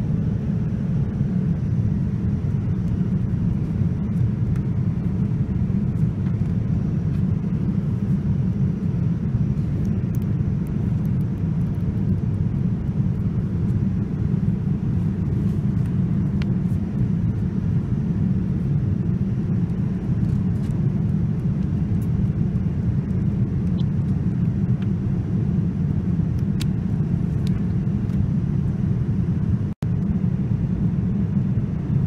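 Steady low rumble of cabin noise aboard a Boeing 787-9 airliner, with a few faint small clicks now and then.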